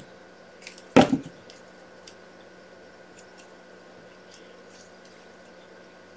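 A single short thump about a second in, then faint small handling noises of paper at a craft bench over a steady low electrical hum.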